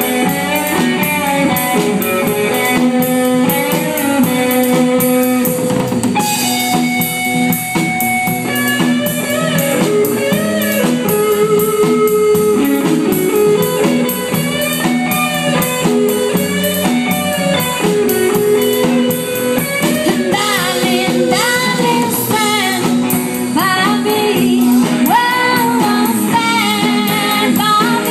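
Live rock band playing electric guitar, electric bass and drum kit through amplifiers, in a bluesy groove with bending, wavering lead lines over it.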